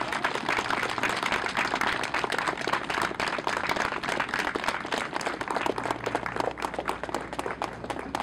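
Crowd applauding, many hands clapping steadily.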